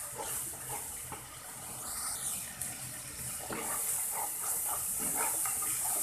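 Spiced curry frying and sizzling in an aluminium karahi, a steady hiss, while a spoon stirs it with a few short scrapes against the pan.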